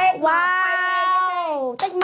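A woman's voice holding one long drawn-out note for about a second and a half, sliding down in pitch at the end, followed by a single sharp hand clap.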